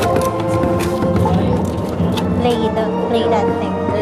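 Background music with steady held tones, under indistinct talking from people in the room and a few light knocks.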